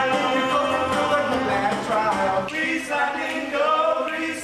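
Group of voices singing a musical-theatre number together on stage.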